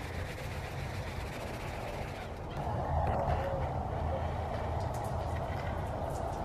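A damp sponge scrubbing the white rim of a window box with a scrubbing cleanser paste: a soft rubbing that grows a little louder about halfway through, over a low steady background rumble.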